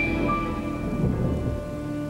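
Rolling thunder slowly dying away, with steady rain, under a few held notes of music.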